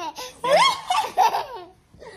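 A toddler laughing, high peals of laughter that start about half a second in and die away before the end.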